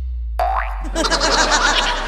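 Comic sound effects cut into a dance track. A low held bass boom fades out. About half a second in comes a quick rising boing-like whistle, then fast warbling cartoon-style effects.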